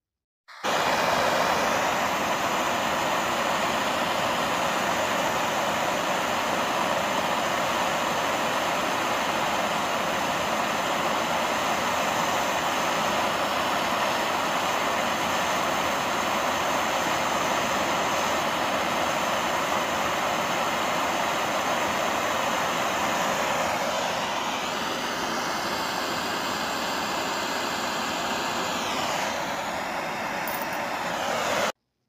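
Handheld propane torch burning with a steady roar while heating a small steel carving burr red-hot. Its tone shifts slightly about 24 seconds in.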